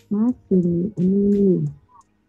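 A person singing three sustained notes without clear words; the third is the longest and falls in pitch at its end.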